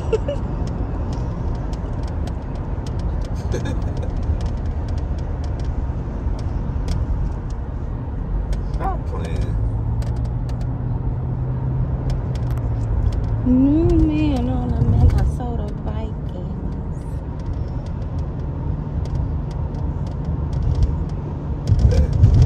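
Car cabin noise while driving: a steady low rumble from the engine and tyres on the road, with a few faint clicks.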